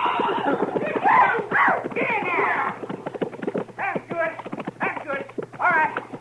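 Horses galloping: rapid, steady hoofbeats as a small herd is driven in at a run, with horse whinnies and shouting voices over the hooves in the first half.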